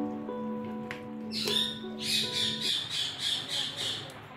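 Background music with held notes that cut off just past the middle. Over it comes a sharp, harsh sound, then a rapid run of harsh squawk-like calls, about three a second, to the end.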